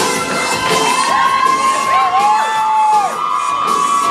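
Audience cheering and whooping, with long held high shouts, over the routine's music and the clicks of tap shoes on the stage floor.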